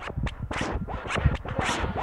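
Glitchy sampled electronic music from a Synclavier 9600: irregular stuttering clicks and scratch-like noise over low thuds, thickening into a dense scratchy wash in the second half.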